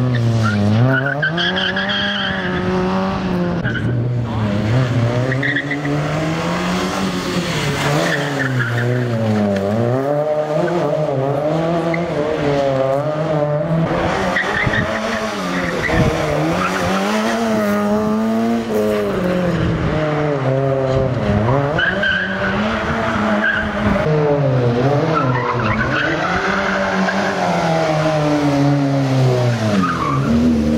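Fiat Cinquecento rally car's engine revving hard and dropping back over and over as the driver goes on and off the throttle and through the gears, with tyres squealing in some of the corners.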